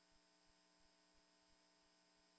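Near silence, with only a very faint steady hum.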